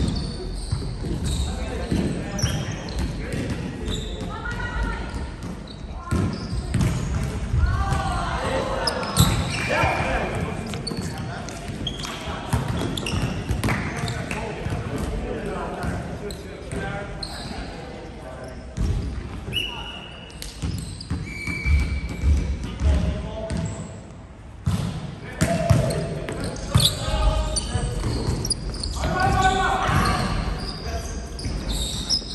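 Indoor volleyball between rallies: players' voices echo around a large gym hall, with a volleyball bouncing on the wooden floor and short high squeaks of shoes on the court.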